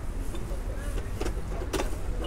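Busy street ambience: a steady low rumble of traffic with passers-by talking, and two short clattering knocks in the second half.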